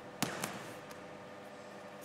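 Two thuds of aikido partners' bodies landing on the tatami mat in breakfalls as they are thrown, the first sharper and louder, the second about a quarter second later.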